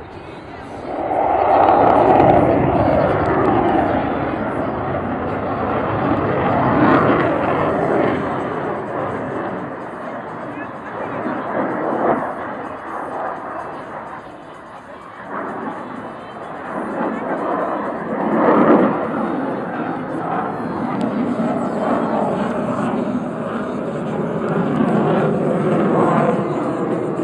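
Aircraft engine noise swells about a second in, its pitch falling as the plane passes. It then surges and fades several times as the aircraft manoeuvres overhead.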